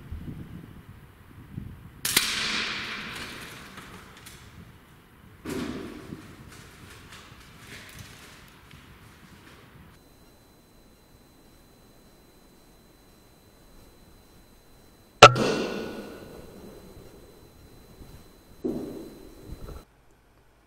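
A single sharp shot from an Air Arms S510 Ultimate Sporter .177 PCP air rifle, the loudest sound, about fifteen seconds in, with a fading ring after it. A shorter burst of noise follows about three seconds later, and earlier there are two bursts of noise that each fade over a second or two.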